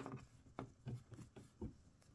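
Faint handling noises as a cloth vest is worked onto a small plastic action figure: soft fabric rustles and light plastic clicks, about half a dozen short ticks, the sharpest right at the start.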